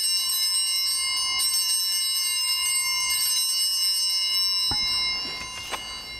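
An altar bell rings out once at the elevation of the chalice, marking the consecration. It sustains with many bright overtones and fades after about five seconds. A few light knocks follow near the end.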